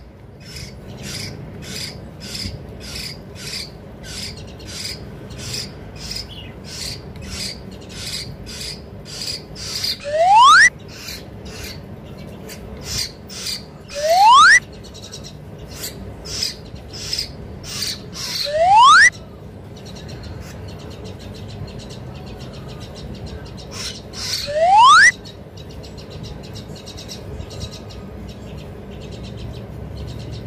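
Young hill myna chick begging while being hand-fed. For about the first ten seconds it gives a steady run of harsh rasping calls, about two a second. It then gives a loud rising whistled call every four to six seconds, the typical hunger cry of a young myna.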